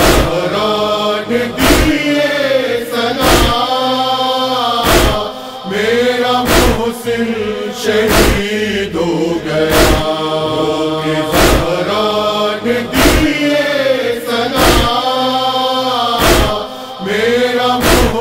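Male voices chanting a noha lament together in slow, drawn-out phrases, with a sharp beat about every second and a half keeping time.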